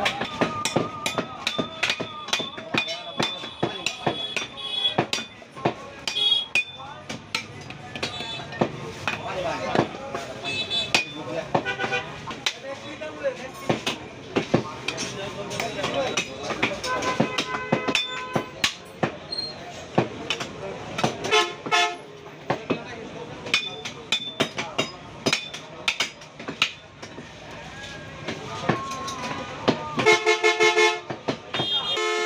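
A long curved butcher's knife chopping beef and bone on a wooden log chopping block: many sharp knocks at an uneven pace. Market voices and vehicle horns sound around it.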